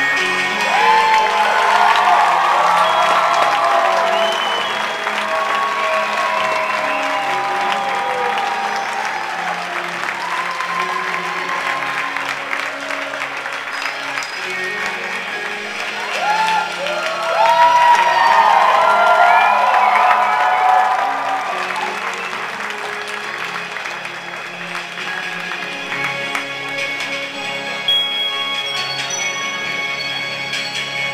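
Recorded music playing over a PA for a lip-sync dance routine, with an audience cheering and applauding in two swells: one in the first few seconds and a louder one about seventeen to twenty-one seconds in.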